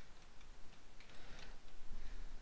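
A few faint, irregular keystrokes on a computer keyboard as a word is typed into a form field.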